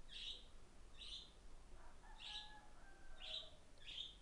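Faint short, high chirps of a small bird, about one a second, over quiet background hiss.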